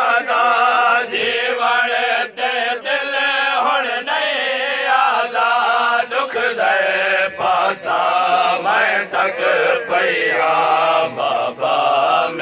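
Men chanting a noha, a Shia lament sung without instruments. A lead reciter sings into a microphone and other men join in.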